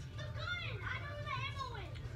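Children's voices at play, high and rising and falling in pitch without clear words, over a steady low hum.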